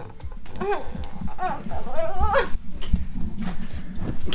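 A person's high-pitched, wordless vocal sounds that glide up and down in pitch, twice, over low rumbles and knocks from a handheld camera being moved.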